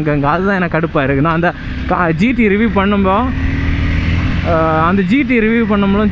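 Honda CBR250R's single-cylinder engine running at road speed, a steady low drone heard between bursts of talk, its pitch rising slightly a little past the middle.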